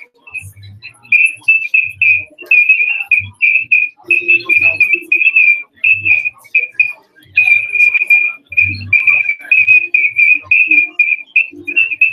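Sound-system feedback squeal: a high, whistle-like tone held on one pitch that keeps cutting in and out, over faint murmuring voices.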